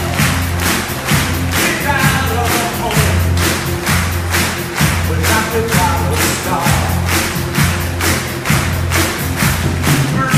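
An orchestra plays an instrumental passage of an American patriotic medley. Sustained bass notes and melody lines sound over a steady, evenly spaced percussive beat.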